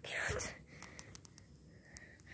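A short, breathy whisper close to the microphone at the start, then faint rustling and small clicks.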